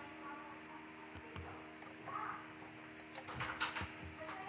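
Faint, scattered small clicks and taps over a low steady hum, with a quick cluster of sharper clicks about three seconds in.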